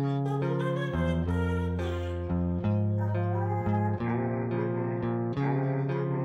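Background music: an instrumental track laid over the footage.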